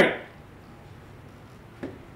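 A man's shouted line cuts off at the very start, then quiet room tone with one brief faint click near the end.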